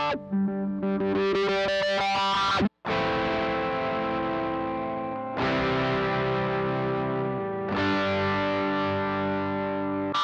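Fender Stratocaster electric guitar through a wah pedal. A held chord brightens steadily as the pedal is rocked forward from heel-down. After a brief cut, three chords are strummed a couple of seconds apart and left to ring.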